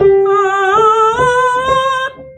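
Male tenor voice singing sustained high notes at the top of the tenor range, stepping up in pitch three times, with a slight vibrato.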